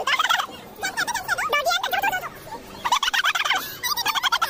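High-pitched children's squeals and laughter in quick warbling bursts, several times.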